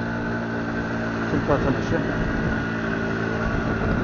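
Motorbike engine running steadily at low speed, heard from the rider's seat, with a brief voice about halfway through.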